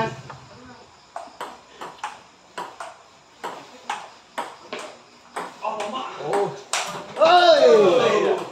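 Table tennis rally: the ball clicks sharply off the bats and the table in a quick, even run of about two to three hits a second. Near the end there is a loud shout with a long falling pitch.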